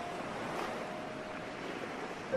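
Ocean surf breaking and washing ashore: a steady rush of noise. A soft held note of the background music fades out within the first second.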